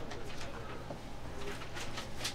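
Dry-erase marker writing on a whiteboard, short squeaky strokes as an arrow and words are drawn, a few sharper strokes near the end, over a steady low room hum.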